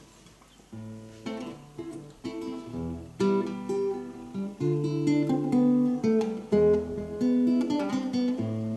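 Classical nylon-string guitar playing a solo instrumental introduction in separate plucked notes and chords, starting under a second in and growing louder from about three seconds.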